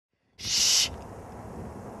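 A short, loud hissing burst, like a whispered 'shh' or a whoosh, lasting about half a second, used as a spooky sound effect, followed by a faint steady background hiss.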